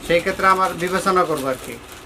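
A man speaking: talk that the speech recogniser did not write down.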